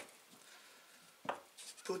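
Faint handling of a metal tin over an acoustic guitar top, with one short knock a little past halfway through.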